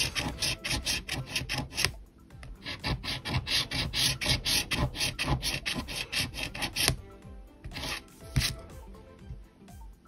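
A coin scratching the coating off a scratch-off lottery ticket in quick back-and-forth strokes, about five a second. There is a short break about two seconds in, and the strokes thin out and grow quieter after about seven seconds.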